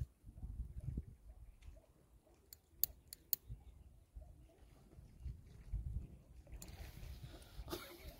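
A lighter clicking four times in quick succession about two and a half seconds in, struck to set light to the corner of an instant barbecue charcoal bag, over a faint low rumble.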